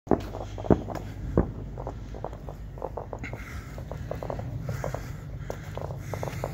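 Distant New Year's fireworks popping and crackling irregularly over a steady low rumble, with three louder knocks in the first second and a half.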